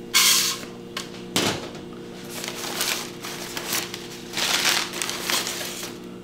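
Packing paper being pulled out of a cardboard shipping box and crumpled by hand, in bursts of rustling and crinkling, the loudest right at the start and a sharp crackle about a second and a half in.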